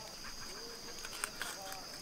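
Steady high-pitched insect chorus, with a faint short animal call about half a second in and another near the middle.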